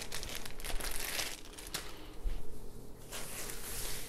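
Thin plastic bags crinkling as they are handled and moved: a run of small crackles, busiest in the first two seconds.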